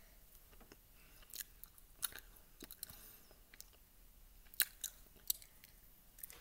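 Faint, scattered clicks and light taps of a small painted hermit crab shell being handled in the fingers.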